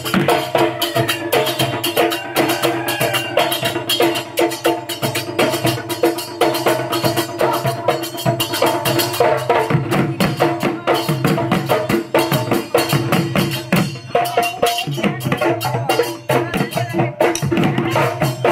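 Live Husori music: Assamese dhol drums beaten fast with stick and hand in a dense, driving rhythm, over a steady held tone.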